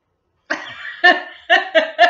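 A woman breaking into loud laughter about half a second in, in quick rhythmic pulses of about four a second.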